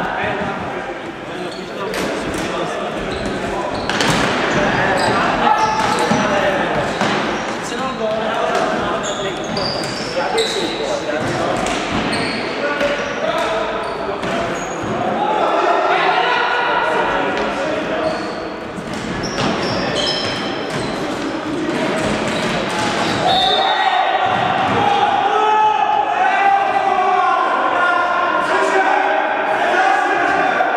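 Indoor floorball play echoing in a large sports hall: the plastic ball and sticks clacking, footsteps and shoe squeaks on the wooden floor, and players calling out. The voices grow louder over the last few seconds.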